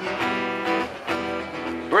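Steel-string acoustic guitar strummed in a steady rhythm, its chords ringing between strokes, with no voice over it.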